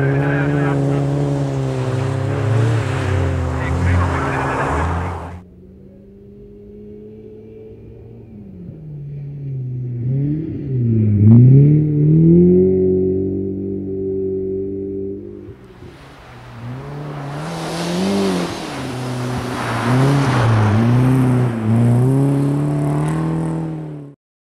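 Rally car engine revving hard on a snow stage, its pitch climbing and dropping repeatedly with gear changes and throttle lifts. It is close and loud for the first five seconds, then quieter and further off before swelling again, loudest about eleven seconds in. It is loud again near the end.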